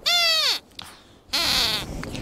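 Sweep the puppet dog squeaking in his high-pitched squeaker voice: a quick arching squeak at the start, then a second, buzzier squeak about a second later.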